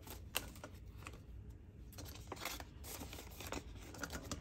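Paper banknotes and a clear plastic cash envelope being handled: faint rustling and crinkling with a scattering of small clicks.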